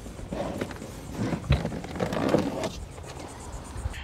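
Honda CR-V's original rubber all-weather rear floor mat being lifted and dragged out of the footwell: irregular scraping and rustling with a few dull knocks, one lower thump about a second and a half in.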